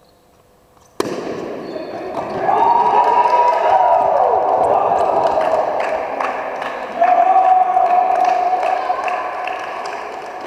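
A softball bat cracks against the ball about a second in, sharp and echoing in the hall. Then players shout and cheer loudly for several seconds, with a second loud burst of yelling about seven seconds in.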